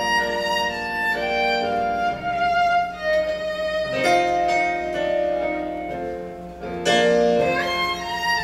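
Violin playing a slow, sustained melody over grand piano accompaniment, with a quieter dip just before a louder entry about seven seconds in.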